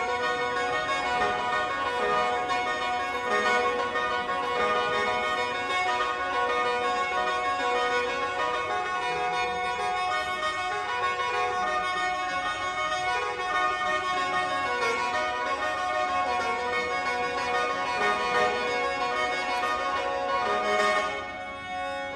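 Bamboo free-reed mouth organ playing a continuous tune of sustained chords and melody notes, with a short break near the end.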